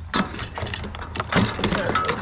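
Several knocks and clicks as a backpack leaf blower is handled and seated into a steel trailer rack, its plastic housing and blower tube bumping against the metal frame, under a steady low hum.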